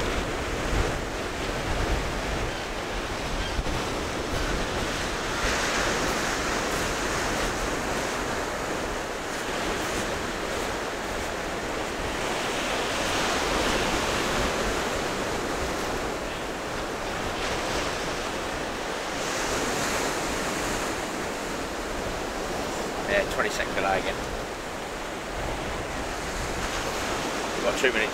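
Surf breaking and washing up the beach, a steady wash that swells and eases every several seconds, with wind rumbling on the microphone.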